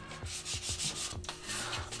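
Hand wet sanding of a painted rocket body tube with a damp sanding sponge: a series of short, quiet rubbing strokes of abrasive over the white paint.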